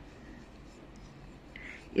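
A brush stirring a wet paste of sandalwood powder and rose water in a ceramic bowl: a faint, steady scraping.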